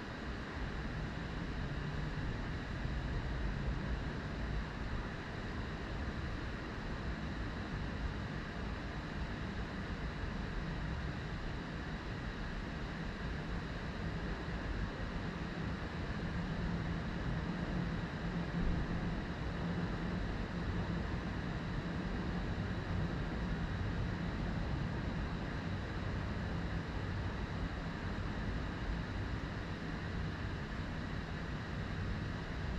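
Steady background noise: a low rumble with hiss over it and a faint, thin high tone, unchanging throughout.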